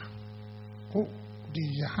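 Steady electrical mains hum from the microphone and sound system, heard plainly in a pause between spoken phrases, with one short spoken syllable about a second in and the man's voice resuming near the end.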